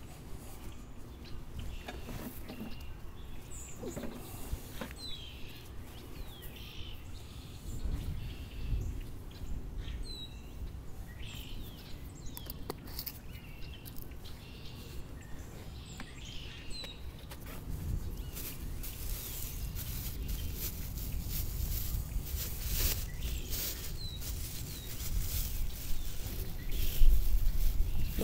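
Birds chirping now and then, short high calls scattered through the stretch, over a steady low background rumble.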